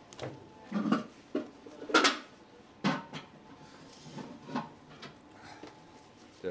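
Kitchen clatter: several separate knocks and clinks of kitchenware being handled on a worktop, the loudest about two seconds in.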